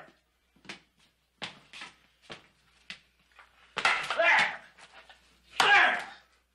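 Short knocks and clatters of a plate and food being handled, then two louder sudden bursts about two seconds apart.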